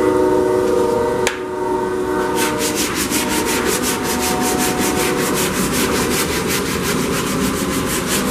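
Power sander working over the filler-patched body panel of a car: a steady whine for the first couple of seconds, then rhythmic raspy sanding strokes, about five a second.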